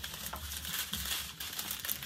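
Small clear plastic bags of diamond-painting drills being handled and crinkled in the hands, an irregular crackling rustle of thin plastic.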